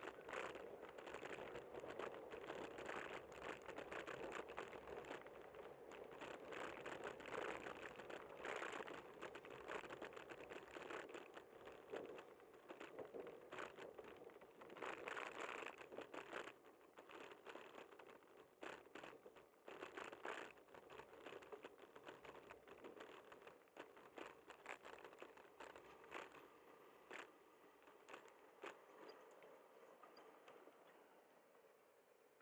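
Faint, muffled rushing with many quick crackles from a camera on a bicycle riding over city pavement: wind and road vibration on the camera, dying down over the last third as the bike slows.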